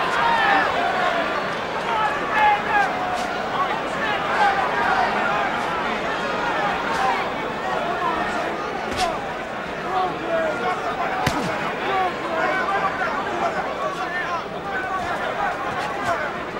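Large arena crowd shouting and calling out, many voices overlapping, with a few sharp knocks in the middle.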